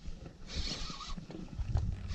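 Baitcasting reel being cranked against a hooked bass, with a short raspy whirr about half a second in, over rumbling handling noise on the microphone.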